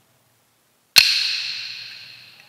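A single sharp strike on a small hand-held percussion instrument, used as the devotion's signal, ringing with a bright, high-pitched tone that fades away over about a second and a half.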